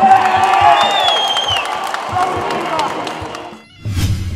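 Fight-night crowd cheering and shouting over music with a steady drum beat, with a high, falling whistle-like call about a second in. The sound drops away abruptly just before the end.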